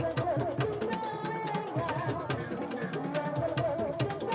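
Madurese musik patrol ensemble: wooden kentongan slit drums of several sizes beaten in a rapid, driving interlocking rhythm, with a wavering melody line, from the seruling bamboo flute, carried above the drumming.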